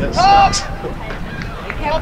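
Mostly speech: a loud voice in the first half-second, then fainter voices over steady outdoor background noise.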